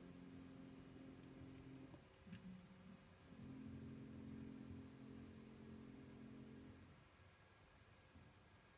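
Near silence: room tone with a faint, steady low hum that drops out briefly about two seconds in and stops near the end, and one faint click.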